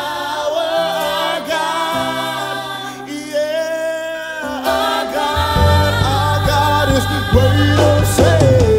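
Gospel worship song: a small choir and lead singer holding sung lines over sustained low instrumental backing, the low end of the band coming in fuller a little past halfway.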